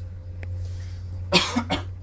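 A person coughing twice in quick succession, a little past halfway through.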